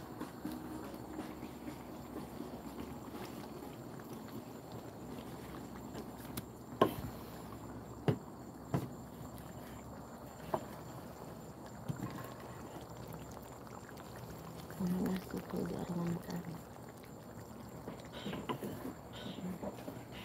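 Low, steady hiss of a gas burner under a wok of curry simmering, with a few sharp clicks and knocks in the middle and a faint voice about three-quarters of the way in.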